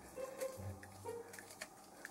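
Faint scattered ticks and creaks of a small screwdriver snugging screws into the plastic frame of a model kit's saucer section.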